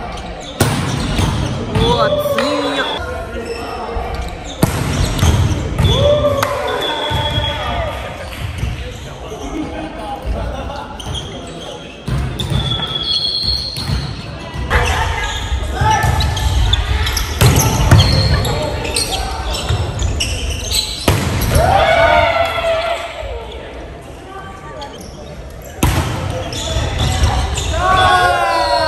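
Players shouting and calling out in a reverberant gymnasium, mixed with sharp thuds of a volleyball being struck and bouncing on the court floor.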